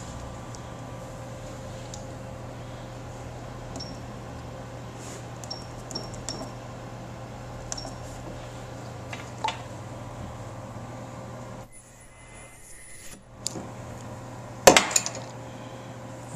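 Short high beeps from an ultrasonic welder's keypad as a new weld time is entered. Then a spot weld of about a second and a half, during which the steady background hum drops away and a faint high steady tone sounds. Near the end comes a sharp clack, the loudest sound.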